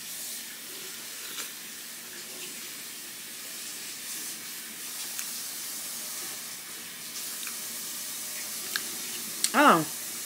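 Steady hiss in the background, with a few faint clicks of mouth noise as a person chews a bite of broccoli, and a short voiced sound near the end.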